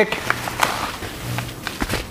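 Faint rustling and light clicks of a padded paper envelope being handled, over a low intermittent hum.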